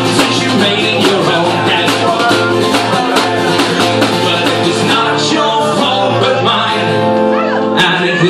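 Acoustic guitar strummed in a steady rhythm, played live.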